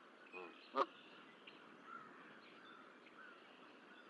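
Canada goose giving two short honks in the first second, the second louder: agitated calls at a bald eagle perched near the nest. Faint high chirps follow.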